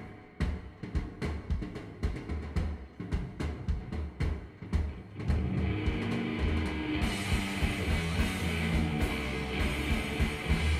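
Live rock band: the drum kit plays alone, kick and snare hits, for about five seconds, then electric guitars and bass come back in, with cymbals from about seven seconds in.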